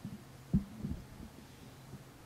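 Microphone handling noise: low thumps and knocks as the microphone on its stand is adjusted by hand. The loudest knock comes about half a second in, a softer one just after, over a faint steady hum.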